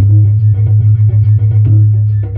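Loud music played through an STK4141-based stereo amplifier and speakers, with a heavy, steady bass line over the melody.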